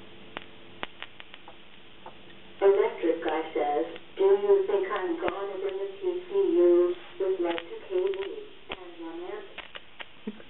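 A person humming or singing a wordless tune in long, wavering held notes, starting a few seconds in and stopping just before the end. Scattered small sharp clicks come before the humming begins and now and then during it.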